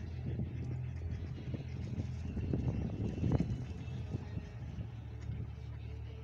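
Steady low rumble of motor traffic, with small irregular splashes and dabbling from mallard hens feeding at the surface; the loudest of these comes a little past the middle.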